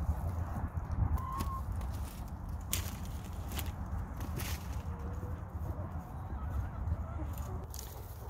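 Domestic hens giving a few short soft calls and clucks over a steady low rumble of wind on the microphone, with a couple of sharp clicks.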